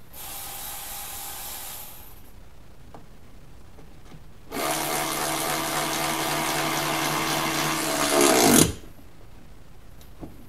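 Handheld power driver running 10 mm nuts down: a short run of about two seconds, then a longer run of about four seconds that gets louder just before it stops suddenly.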